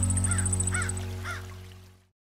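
Sustained music chord fading out, with three crow caws about half a second apart over it and a fast high-pitched trill during the first second; it all cuts to silence at the very end.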